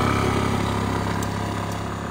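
Motor scooter engine running steadily as the scooter rides off, fading as it moves away.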